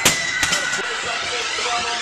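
Loaded barbell with bumper plates dropped onto the gym floor after a power clean: one loud slam right at the start and a smaller second impact about half a second later as it bounces, with voices and music behind.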